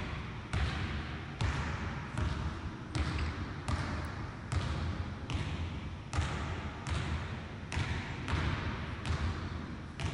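A basketball dribbled steadily on a hardwood gym floor, about one bounce every three-quarters of a second, each bounce echoing through the large hall.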